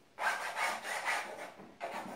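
A paintbrush loaded with oil paint scrubbed back and forth on stretched canvas: a scratchy rubbing that comes in several quick strokes, about two a second.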